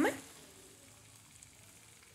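Very faint steady sizzle from a frying pan of creamy mushroom pasta on a gas hob, close to silence.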